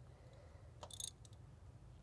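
Near silence, with a brief faint clicking of a socket ratchet turning a spark plug about a second in.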